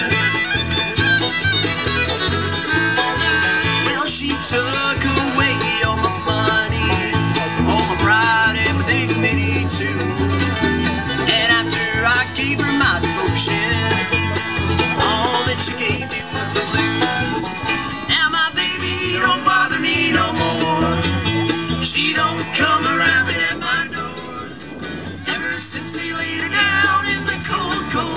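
Bluegrass band playing an instrumental break, the fiddle carrying the melody over banjo, acoustic guitar, mandolin and a steady bass line.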